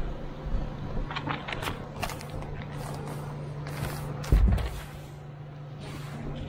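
Synthetic roofing underlayment sheet being unrolled and spread by hand, rustling and crackling in short bursts, with a heavier thump about four seconds in. A steady low hum runs underneath.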